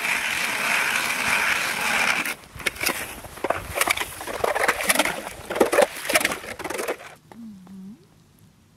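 Hand ice auger drilling a hole through snow-covered ice. The blades make a steady scraping sound for about two seconds, then uneven crunches and scrapes as they cut through the ice, stopping about seven seconds in.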